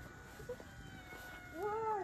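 A cat meows once near the end, a single call that rises and then falls in pitch.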